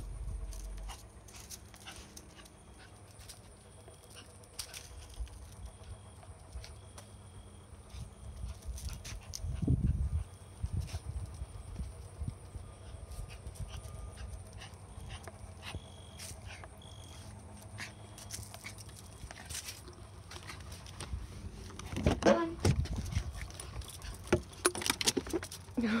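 Small white dog making excited sounds while heading for a car ride, mostly faint, with louder bursts near the end.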